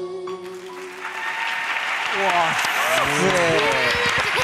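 The backing music of a ballad ends within the first second, giving way to applause. From about two seconds in, excited voices call out over the clapping.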